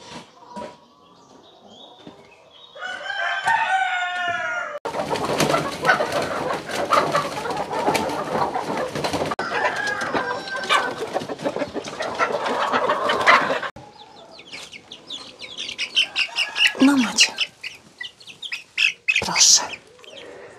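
Chickens: a rooster crows about three seconds in, followed by about nine seconds of loud rustling and scuffling noise. Near the end, young chickens peep in high, repeated calls.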